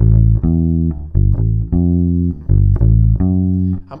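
Electric bass guitar (Fender) playing a slow run of about six single notes, each held about half a second with short gaps between. It is part of an A-minor rock riff, including the G-to-A move.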